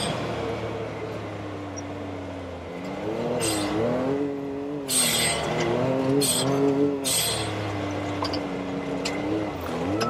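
Can-Am Maverick X3 Turbo RR's three-cylinder turbocharged engine revving up and down with the throttle while driving hard on a muddy trail. Short hissing bursts come three times as the revs drop.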